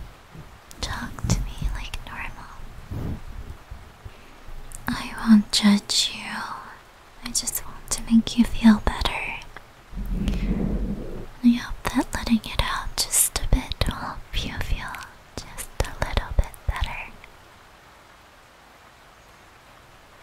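A woman whispering close to the microphone in short, broken phrases, which the recogniser did not catch as words. It goes quiet for the last few seconds.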